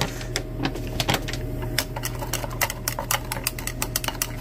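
Glass stirring rod clinking and ticking against the inside of a glass beaker as the liquid is stirred: many quick, irregular ticks, more frequent in the second half, over a steady low hum.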